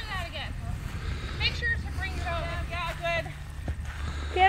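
Voices talking in short phrases over a steady low rumble, with a single sharp knock near the end.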